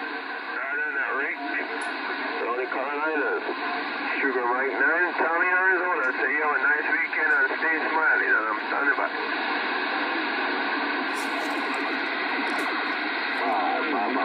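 Radio receiver playing a weak, garbled distant voice through steady static hiss, thin and tinny with no low end. The voice comes through for the first two-thirds, then the static carries on mostly alone until a few more words near the end.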